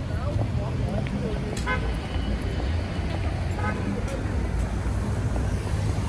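City street traffic at night: a steady low rumble of passing cars, with faint voices in the background and two short high beeps about two seconds apart.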